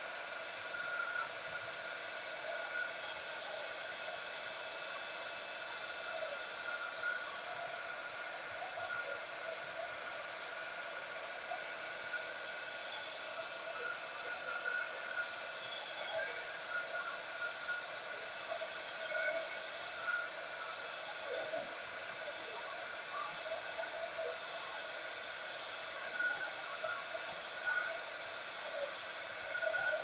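Handheld embossing heat tool running steadily, a fan hiss with a steady whine on top, blowing hot air over an ink-soaked card that is too wet and is being dried.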